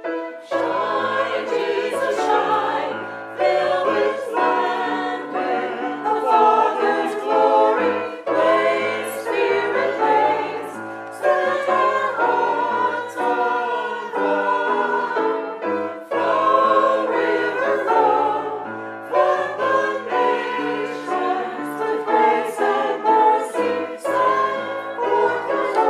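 Small church choir singing an anthem together.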